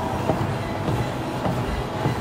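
Running footfalls landing in a regular rhythm on a moving Life Fitness treadmill belt, over the treadmill's continuous running noise.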